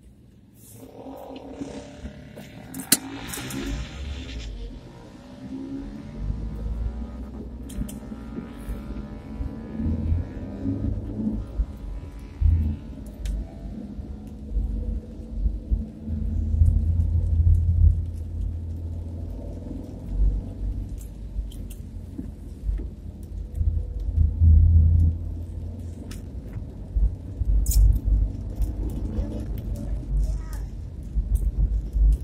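Low, uneven rumble of a car driving, heard from inside the cabin and swelling at times, with music playing underneath.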